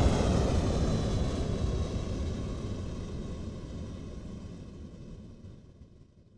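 Rocket-launch sound effect: a heavy, noisy rumble that fades steadily away and dies out at the end.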